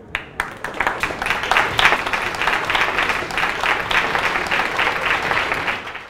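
Audience applauding: a few separate claps at first, quickly filling in to steady, dense applause, fading near the end.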